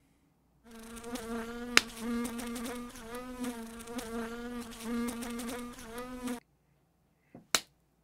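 A steady insect buzz, like a fly, with a slightly wavering edge. It starts abruptly under a second in and cuts off abruptly after about six seconds. A single sharp click sounds about two seconds in.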